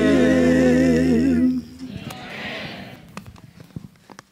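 Mixed vocal quartet singing into microphones, holding the final chord of a hymn with vibrato, which stops about a second and a half in. Afterwards a few faint sharp clicks of handheld microphones being handled.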